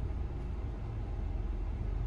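Steady low engine and road rumble inside the cabin of a Hyundai Venue 1.0 turbo-petrol iMT moving off slowly in first gear.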